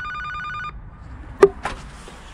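Door-entry intercom panel sounding its electronic call tone while ringing a flat, a warbling two-pitch ring that stops under a second in. About a second and a half in there is a single sharp click.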